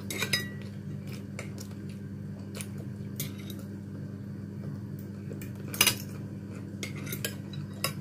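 Metal fork clinking and scraping against a plate while eating: a few separate short clicks, the loudest about six seconds in, over a steady low hum.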